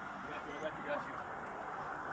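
Faint, steady outdoor background noise picked up by a police body-worn camera microphone, with a faint brief sound just before a second in.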